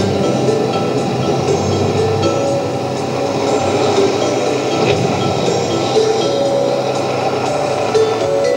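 A car driving up, a steady noisy rumble of engine and tyres, with the series' music playing underneath.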